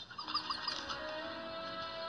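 Soft, gentle background music from the cartoon's score, with long held notes. A few short high chirps sound in the first half second or so.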